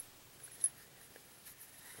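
Quiet handling of a pistol barrel and a bore snake cord being fed through it, with one light click about two-thirds of a second in and a few fainter ticks after.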